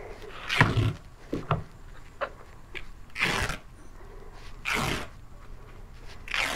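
Fabric packing wrap rustling in four short swishes as it is pulled back off a new plastic kayak, with a few light clicks between them.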